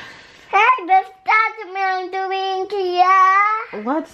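A young child singing in a high voice: a couple of short rising notes, then a long held note that wavers slightly for about two and a half seconds.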